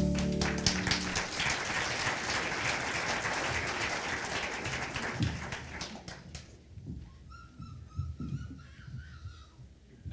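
Audience applauding as the song's last chord dies away, the clapping fading out over about six seconds. A faint wavering tone follows near the end.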